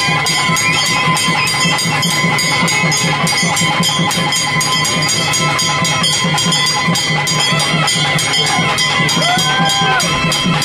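Fast, even drumming at a temple festival, mixed with crowd noise. A few steady high tones are held over it, and a voice rises near the end.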